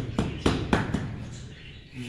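Four quick, sharp taps in the first second as a marble floor tile is knocked down into its mortar bed to seat it, each tap with a short ring.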